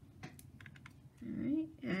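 A few light, sharp clicks and scrapes of a paintbrush working in a plastic watercolor pan set as it picks up paint. A voice starts in the second half.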